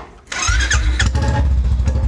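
A Royal Enfield Classic's single-cylinder engine being started with the starter button, catching about half a second in and then idling with an even, low thump.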